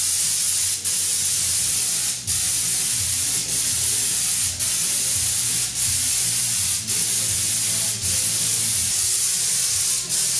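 Air-fed spray gun hissing steadily as it sprays textured Raptor bedliner, laying on the light dust coat that forms the final finish. The hiss has short breaks about once a second, over a low hum.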